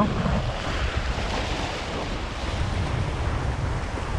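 Small waves breaking and washing over shoreline rocks, the wash swelling about a second in, with strong wind buffeting the microphone as a low rumble.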